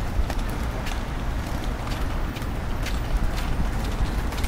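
A child's small kick scooter rolling over interlocking brick pavers: a steady low rumble with scattered, irregular clicks.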